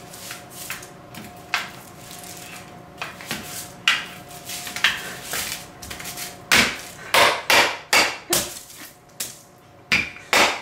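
Wooden rolling pin pushed and pulled over a hot dog on a parchment-lined metal baking sheet, rubbing and knocking, then brought down hard in a run of about six loud strikes over the last few seconds.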